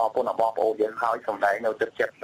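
Speech only: a newsreader talking in Khmer.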